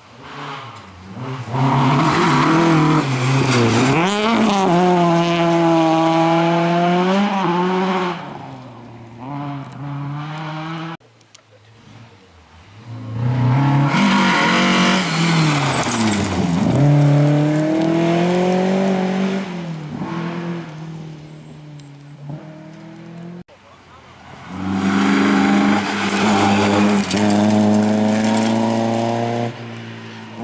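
Three rally cars, one after another, driving hard through a gravel-stage bend, each engine revving up and down in pitch as it passes, among them a BMW E30 M3's four-cylinder. The passes are cut together, each breaking off suddenly.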